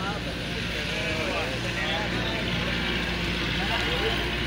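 Steady outdoor market background noise with a low hum and scattered distant voices.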